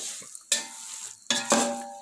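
Spatula stirring and scraping thick carrot halwa (gajar ka halwa) in a large pot, with a few sharp scrapes against the pot over a faint sizzle: the halwa is being slow-fried (bhuna) in its own oil.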